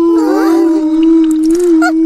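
A long howling note held steadily at one pitch, with short rising glides over it about half a second in.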